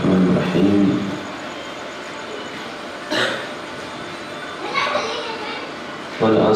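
A man's voice over a public-address microphone for about the first second, then a pause filled with the background chatter of a gathered crowd, with a brief sharp sound about three seconds in.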